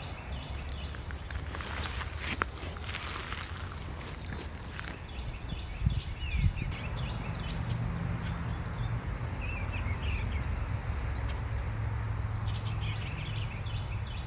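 Outdoor creekside ambience: a steady low rumble with two sharp knocks about six seconds in, and faint bird chirps in the second half.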